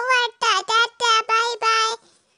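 A high, child-like voice singing a short phrase of about six syllables, most of them held at a level pitch.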